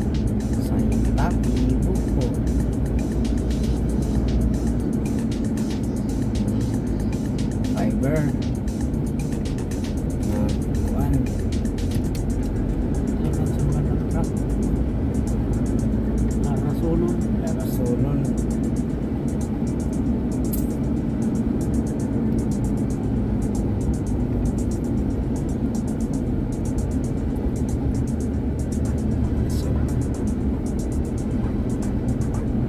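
A car being driven, heard from inside the cabin: a steady low rumble of engine and road noise. Background music plays over it, with faint voices now and then.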